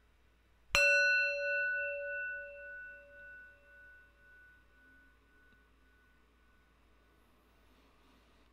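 A small brass singing bowl struck once with a wooden striker, a little under a second in. It rings with a low tone that wavers about twice a second under several higher overtones, dying away over a few seconds while one high overtone lingers faintly.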